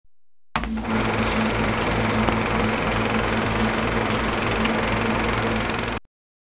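Channel logo sting: a dense, steady whirring, machine-like noise with a low hum underneath, starting suddenly about half a second in and cutting off abruptly at the end.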